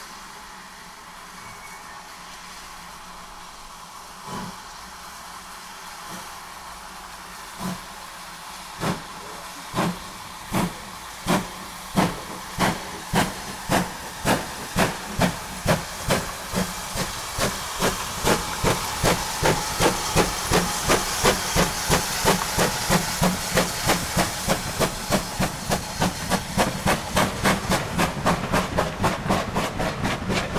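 Steam locomotive starting away: a steady hiss of steam, then exhaust chuffs beginning about four seconds in, slow at first and quickening to about three a second as it gathers speed.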